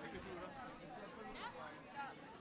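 Quiet, indistinct chatter of several overlapping voices, with no words that can be made out.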